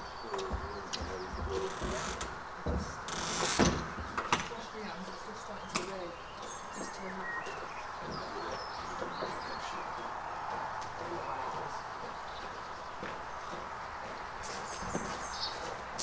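Top door flap on the side of a horsebox being pulled down and shut, with a few loud knocks and clatters about three to four seconds in. Birds chirp in the background.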